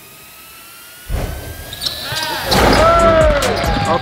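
Basketball practice sounds in a gym: a sudden thump about a second in, then squeaks and players' voices.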